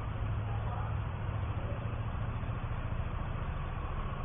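Steady low hum under an even hiss of background noise.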